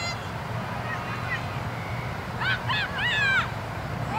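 Children shouting and yelling during play, in a few short, high-pitched, rising-and-falling cries about two and a half to three and a half seconds in, over a steady low background rumble.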